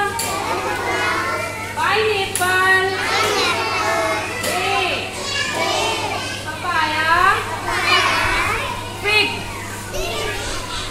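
A group of young children's voices talking and calling out together, with no clear words.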